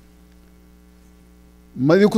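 Steady low electrical mains hum, heard in a pause between a man's words. His voice comes back in near the end.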